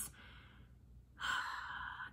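A woman taking an audible breath in between phrases of speech, lasting a little under a second near the end. A faint breath out trails off at the start.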